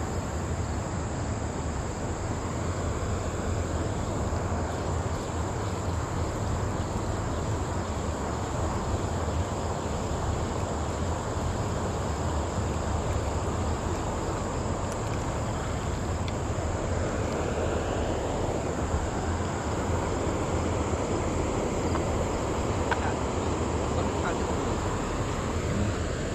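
Steady outdoor ambience: a low wind rumble on the microphone under a continuous high-pitched drone of insects such as crickets.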